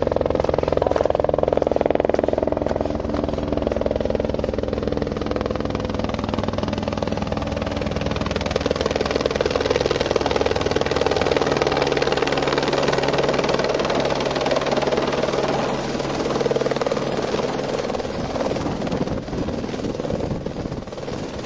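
Helicopter flying in and setting down close by, its rotor beat steady and loud. The sound grows fuller and closer from about halfway, and the low steady tones fade out near the end as it lands with its rotors still turning.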